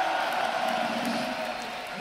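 Large rock-concert crowd cheering and applauding, a dense steady roar that eases slightly near the end.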